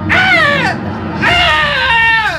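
A man's voice wailing in long, sung-like notes that each slide downward in pitch, two in succession, in a theatrical lament.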